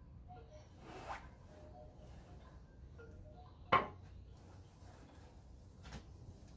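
Quiet room with small movement sounds and one sharp clack a little past halfway, a ceramic mug being set down on a hard surface.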